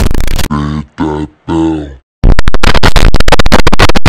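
Deliberately distorted, clipped audio of a 'triggered' meme edit: a blast of harsh noise, three short grunting vocal sounds about a second in, a brief silence, then very loud, rapidly chopping crackle from about halfway through.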